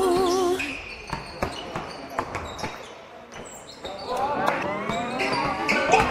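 Basketball bouncing on a wooden gym floor in a large hall: separate sharp knocks, after background music cuts off about half a second in. Voices calling out come in near the end.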